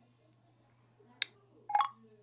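iPhone VoiceOver sound cues in Safari: a single short click about a second in, the kind of tick that signals a page loading, then a brief electronic tone near the end.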